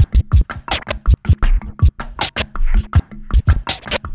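Drum scratching: kick-drum and snare samples scratched back and forth on a turntable record and cut in and out with the mixer's crossfader, in quick, rhythmic strokes.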